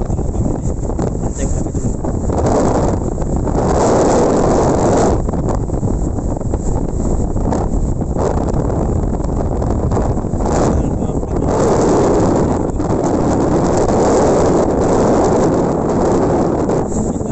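Strong storm wind buffeting the microphone over breaking surf on a sandy beach. The noise swells and eases in gusts, loudest about four seconds in and again from about twelve seconds.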